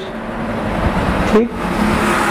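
A steady rushing noise that fills the pause, like road traffic going by, with a spoken word near the end.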